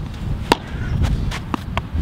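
A poptennis paddle hitting the ball once with a sharp crack about half a second in, followed by a couple of fainter knocks from the ball, all over a low steady rumble.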